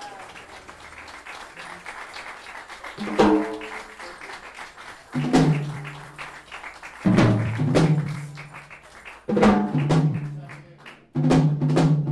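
Jazz organ and drum band playing a series of accented sustained chords, about one every two seconds, each struck with a drum hit and left to ring and fade, before settling into a steady groove at the very end.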